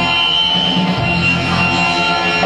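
Loud live noise music from a band: a dense, distorted wall of sound with held pitches that barely changes, with a thin high tone held through the first part.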